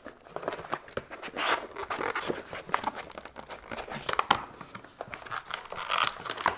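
Stiff plastic blister packaging crinkling, with irregular clicks and snaps, as a multimeter is worked free of it by hand.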